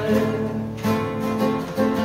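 Two acoustic guitars strumming chords together, one of them a Yamaha, with a fresh strum about once a second in an instrumental passage without singing.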